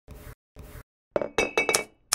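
Intro sound effect for an animated logo: two short soft noises, then a quick run of four glass-like clinks with a brief high ring.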